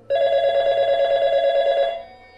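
A telephone bell ringing: one loud, rapidly trilling ring of nearly two seconds that starts and stops suddenly.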